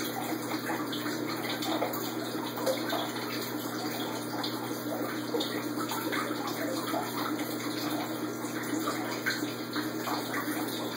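Aquarium filtration running: water trickling and splashing steadily, with a low steady hum underneath.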